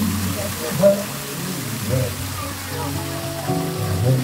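Steady splashing of a rock-wall waterfall fountain pouring into its pool, mixed with music and the chatter of a crowd.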